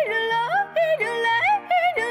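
A young girl yodeling: her voice flips rapidly up and down between a low and a high register in short repeated phrases, with a low held note underneath.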